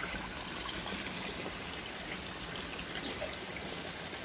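Spring water pouring from a white PVC pipe into a concrete fish pond, a steady splashing stream.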